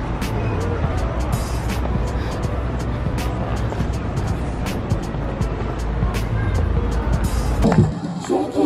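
City street ambience heard while walking: a steady low rumble of traffic and wind on the camera microphone, with frequent short clicks and taps and music playing in the background. Right at the end it cuts sharply to clearer music.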